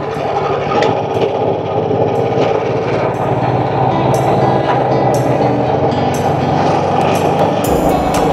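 Firman SFE460 single-cylinder four-stroke 458 cc petrol engine running steadily under load as it drives a fishing boat's longtail propeller, with a fast, even firing beat. It settles in the first second or two and then holds constant revs.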